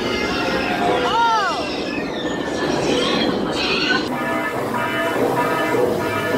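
A rider's voice whooping with a rising-then-falling pitch over loud rushing noise on a boat ride heading into its drop. About four seconds in, an abrupt cut to steady droning music.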